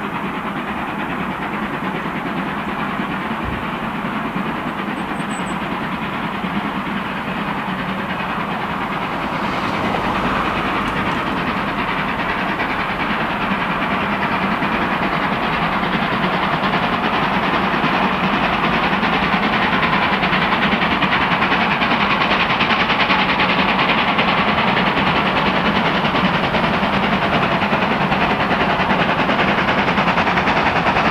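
A steam locomotive hauling a train, heard approaching and growing steadily louder.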